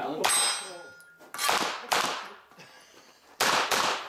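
Pistol-caliber carbine firing at steel targets: about five sharp strikes with metallic clangs, the first leaving a high ring for about a second. The gun itself is pretty quiet next to the steel.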